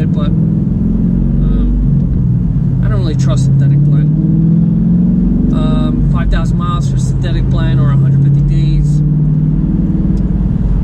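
Car engine and road noise heard inside the cabin while driving: a steady low drone whose pitch rises and falls a little, with a man talking over it in stretches.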